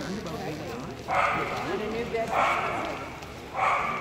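A dog barking three times, a little over a second apart, each bark starting suddenly and trailing off in the echo of a large hall, over background chatter.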